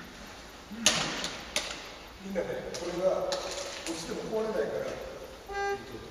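Voices talking in a hall, with several sharp knocks, the loudest about a second in, and a short held tone near the end.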